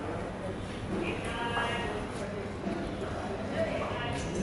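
Outdoor background noise with short, voice-like calls about a second in and again near the end.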